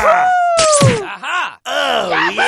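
A cartoon-style voice effect groaning in one long falling pitch over the first second, with a short hit partway through, then a few brief vocal sounds.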